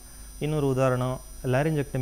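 A man speaking, with a steady low mains hum under his voice.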